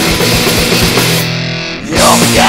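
Unmixed demo recording of a rock band playing an instrumental passage, led by electric guitar. About a second and a half in, the high end drops away and the sound thins and dips, then the full band comes back in at the end.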